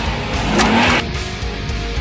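Rock music with electric guitar, with a car engine revving over it in the first second before the sound cuts sharply to the music about a second in.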